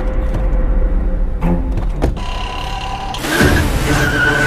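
Film sound effects of a car at night: a steady low engine rumble with a couple of short door-like clicks in the middle, and a louder rush near the end.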